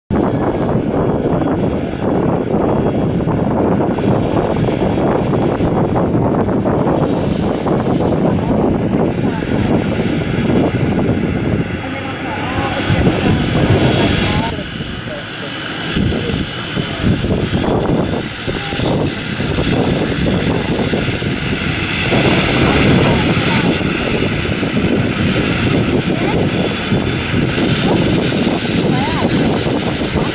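Turboprop engines of an ATR 72-600 running on the ground during engine start. A steady rumble holds throughout, and from about halfway through a high whine builds and climbs slightly as the near engine spools up and its propeller starts turning.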